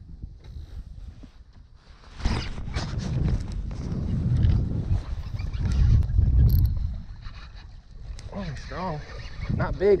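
Heavy, irregular low rumble of wind and clothing rubbing against a chest-mounted camera's microphone, with a few knocks, starting about two seconds in and easing off after about five seconds.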